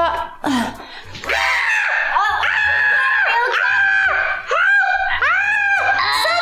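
A woman screaming and shrieking with laughter in long, high-pitched cries, starting about a second in and going on in bursts to the end.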